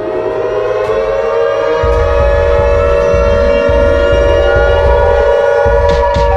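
Loud siren wail used as the megaphone monster's scream: steady held tones with a second siren voice winding up in pitch partway through, over a low rumble.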